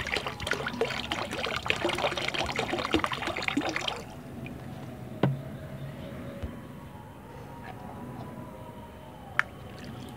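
Water poured from a plastic bottle into a plastic basin of liquid fertilizer mix, splashing for about four seconds and then stopping; the water is being measured out by the litre to dilute the fertilizer. Two faint knocks follow later.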